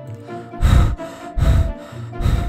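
A voice actor huffing two heavy breaths about a second apart, voicing a dog winded from running, over soft background music.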